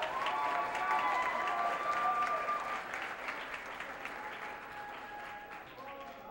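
Audience applauding at the end of a band's song, with a few voices calling out over it; the applause dies away over the few seconds.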